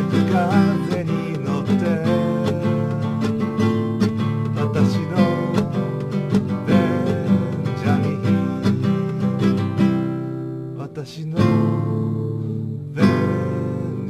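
Acoustic guitar strumming chords. The playing thins out about ten seconds in, then strummed chords start again at about eleven and a half seconds and again at about thirteen.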